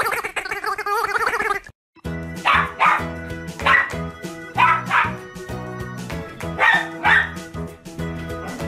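A small white fluffy dog barking in short pairs of barks, every second or two, over upbeat background music with a steady bass. Before that comes about two seconds of a wavering animal call that cuts off suddenly.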